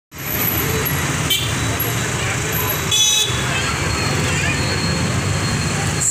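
Busy street traffic with a steady low engine rumble, cut by two short vehicle horn toots: a brief one just over a second in and a louder one about three seconds in.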